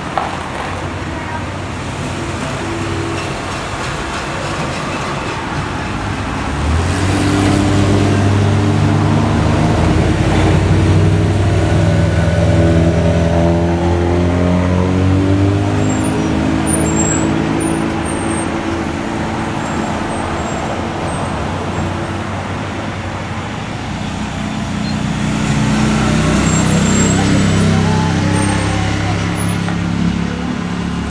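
Motor vehicles on the road, with a steady wash of traffic noise. Engine hum swells twice, once from about a quarter of the way in and again near the end, as vehicles pass.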